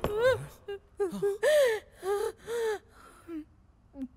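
A woman's distressed vocalising: several short high-pitched cries that fall in pitch, mixed with breathy gasps, dying down to quieter sounds near the end.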